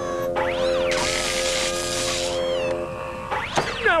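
Cartoon background music with animated sound effects over it: a whistling glide that rises and falls, then a hiss lasting over a second that ends in falling tones, and more sweeping tones near the end.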